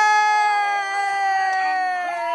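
A person's long, high-pitched shriek held for several seconds, slowly falling in pitch, with other voices faint beneath it.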